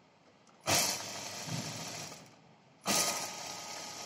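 Juki industrial sewing machine running in two bursts of stitching: it starts abruptly about two-thirds of a second in, runs steadily for about a second and a half and winds down, then starts abruptly again near three seconds and keeps running.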